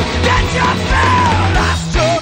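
Psychedelic rock band playing live: distorted electric guitar, bass and drums, with a bass line stepping between notes and a falling melodic line in the middle.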